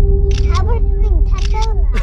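Camera shutter sound from a phone taking pictures, heard among snatches of talk over a steady low hum.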